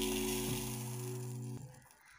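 Background music with sustained notes, over the rustling hiss of dry parboiled rice grains pouring onto a plate; both stop about one and a half seconds in.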